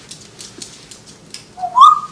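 African grey parrot's claws clicking on a hardwood floor as it walks, then a short, loud whistle rising in pitch near the end.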